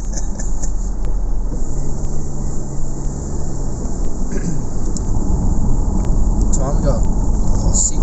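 Steady road and engine rumble heard from inside a moving car's cabin.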